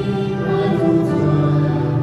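A mixed vocal quartet of two women and two men sings a hymn in Iu Mien in harmony, on long held notes, with piano accompaniment.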